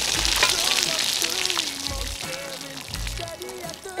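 Pasta water being poured from a pot through a plastic colander and splattering onto rocky ground: a steady hiss that eases off in the last second or two as the pour slows.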